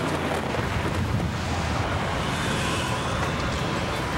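Storm sound on a commercial's soundtrack: steady wind and driving rain with a low rumble underneath.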